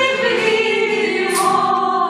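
A woman singing a slow tango to acoustic guitar accompaniment, her voice holding long sung notes over the strummed guitars.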